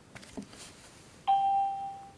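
A single electronic chime: one clear tone that starts suddenly past the middle and fades away within about a second.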